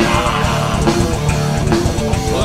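Live hard rock band playing loudly: electric guitars and a drum kit.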